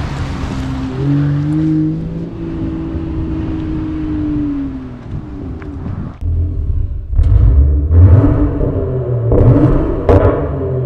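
Land Rover Defender P400's turbocharged inline-six running through a QuickSilver performance exhaust: a steady engine note that climbs about a second in, holds, then falls away, followed from about six seconds in by several loud revs.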